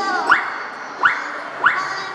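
Three short, sudden sound effects that each sweep quickly up in pitch, about two-thirds of a second apart, played over background music during a clown ball-throwing routine.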